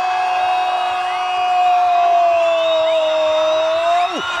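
A football commentator's long drawn-out "goool" shout, one held high note that sags slightly in pitch past the middle and rises again as it ends.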